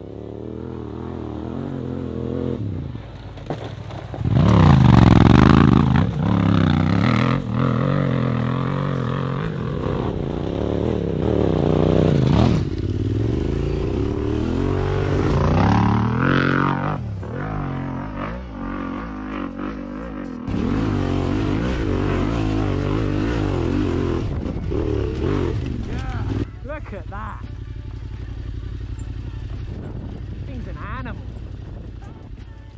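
Yamaha Ténéré 700's parallel-twin engine, fitted with a Yoshimura RS12 exhaust run without its sound baffle, revving up and down under throttle while riding off-road. It is loud, with a bark that sounds like a rally bike. The pitch rises and falls with each burst of throttle, and it is loudest a few seconds in.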